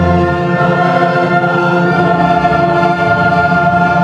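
Large mixed choir singing long held chords, with an orchestra of strings and brass accompanying.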